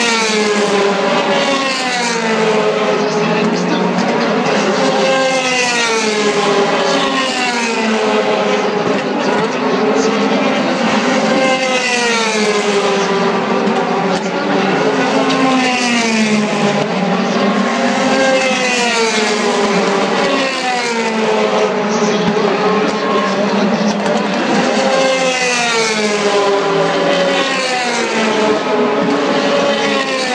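DTM touring cars' 4.0-litre V8 racing engines running at full race revs, one car after another: the engine note falls as each car brakes into the corner and climbs again as it accelerates away, over and over with no break.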